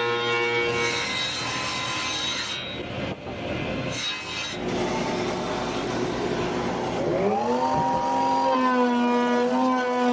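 Woodworking machines cutting and sanding the edges of a plywood panel: a jointer planing the edge, with a short break about three seconds in, then an edge belt sander. About seven seconds in, a motor whine rises in pitch and settles into a steady tone.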